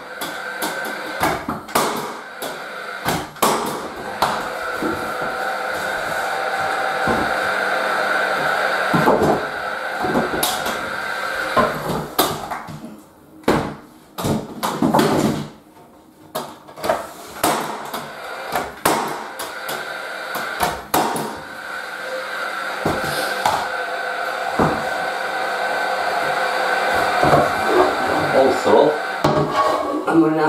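Framing nailer firing nails into softwood stud timbers: repeated sharp shots and knocks of timber on timber, over a steady whirring hum that fades out for a few seconds midway.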